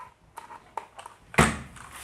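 Handling of an E-DRA EK361W plastic-cased 60% mechanical keyboard: a few small clicks as its underside power switch is slid on, then a louder knock about one and a half seconds in as the keyboard is turned over and set down.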